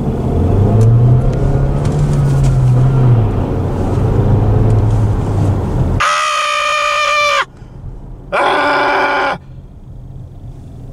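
A 2022 Nissan Qashqai's turbocharged 1.3-litre four-cylinder petrol engine, heard from inside the cabin, revving hard under full-throttle acceleration: its note climbs, then drops about three seconds in as the manual gearbox is shifted up. Near the end the driver gives two loud wordless yells over the fainter engine.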